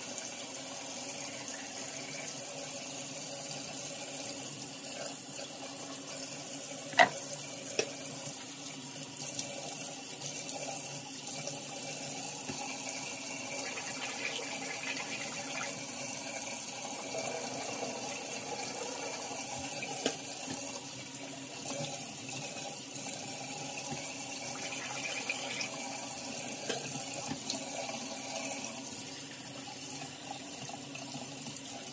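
Bathroom sink tap running steadily, with a few sharp clicks over it, the loudest about seven seconds in and another about twenty seconds in.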